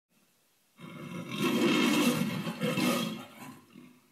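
A lion-like roar in two pushes. A long one starts about a second in, and a shorter one follows, fading out before the end.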